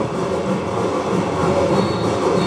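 Batucada samba percussion ensemble drumming, played back over a loudspeaker system and going on steadily.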